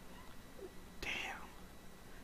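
A man's single short breath out, a soft hiss about halfway through, over a faint steady hum.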